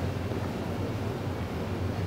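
Steady low hum with an even background hiss: the room tone of a large, open space, with no distinct event.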